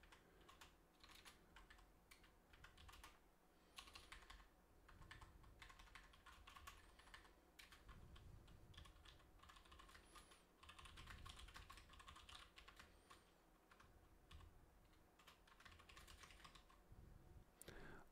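Faint computer keyboard typing: scattered, irregular key clicks with short pauses, a little busier about four seconds in and again around the middle.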